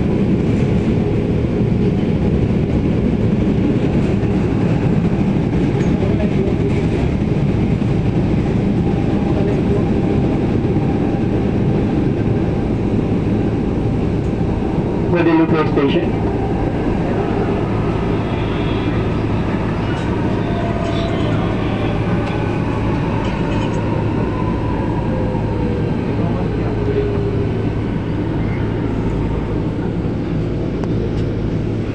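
Manila MRT Line 3 train heard from inside the car, with a steady rolling rumble. About halfway through, an oncoming train passes close on the other track with a brief loud rush. The train then gives a falling whine as it slows into a station.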